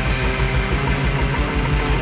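Late-1960s psychedelic rock band recording playing: electric guitar, bass and drums with a steady beat.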